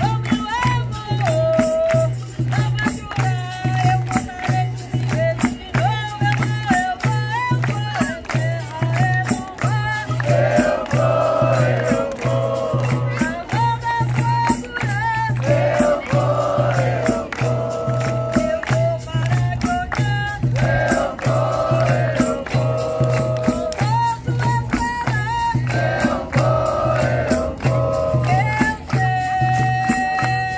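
Capoeira roda music: a lead singer's calls answered by a group chorus over a steady atabaque drum beat, with berimbau, pandeiro and hand clapping. The chorus first comes in about ten seconds in, then trades off with the solo voice.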